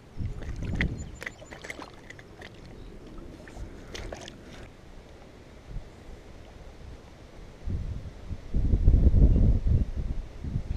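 Wind buffeting the camera microphone in uneven low gusts, loudest in the last two seconds, with a few light clicks in between.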